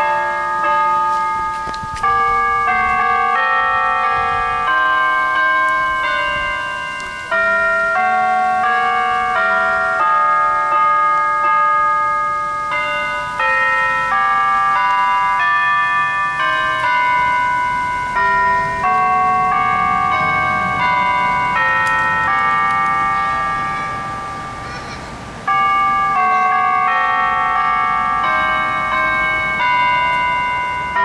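Tower bells playing a slow tune, one ringing note after another with each note sounding on under the next, in phrases with a fresh loud strike after a short dying-away.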